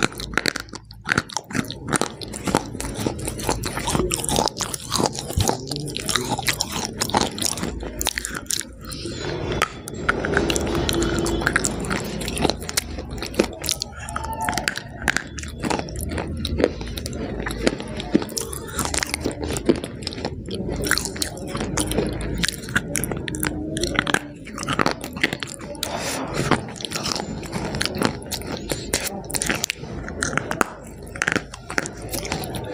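Close-miked biting and crunching of a crumbly, powdery white food, followed by chewing, as irregular crunches and mouth sounds throughout.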